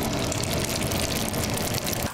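Steady, loud rushing background noise of a working candy kitchen.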